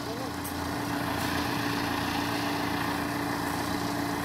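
Backhoe loader's diesel engine idling steadily with a constant hum.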